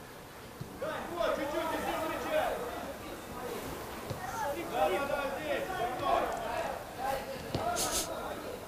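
Players' voices calling and shouting across an open football pitch, heard at a distance, with a couple of short sharp knocks in between.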